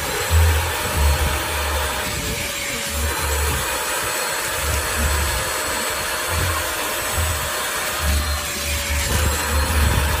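Handheld wet-and-dry upholstery vacuum running with a steady whine, its nozzle drawn across sofa fabric, with background music.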